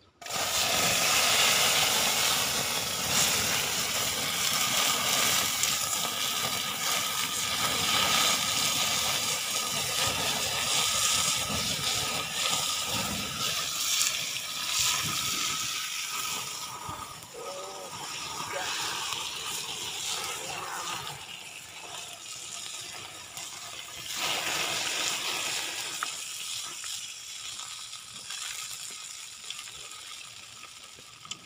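Oil sizzling and spitting in a small pan over a wood fire as coconut worms fry, stirred with a stick. The sizzling starts suddenly, is loudest for the first half, eases off about halfway and picks up again a few seconds later.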